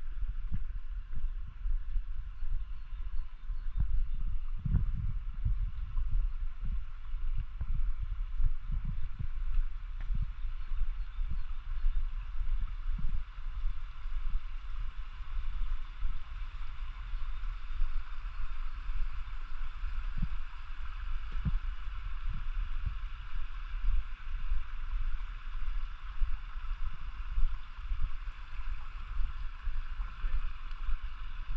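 Small rocky mountain stream running with a steady rush, overlaid by wind buffeting the microphone in low, irregular gusts.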